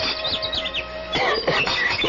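A held musical chord from a scene-change bridge stops at the start. Small birds then chirp and warble, a sound effect behind the drama.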